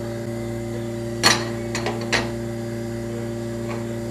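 Steady hum of lab machinery with a few short clicks and knocks from handling at a filtration test machine's round mask holder, the loudest a little over a second in and two more about a second later.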